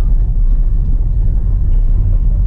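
Car driving over a cobblestone street, heard from inside the cabin: a steady low rumble of the tyres and suspension on the cobbles.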